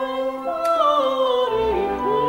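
A woman singing opera with orchestral accompaniment, her vibrato line falling in pitch over about a second, with deeper orchestral bass coming in near the end.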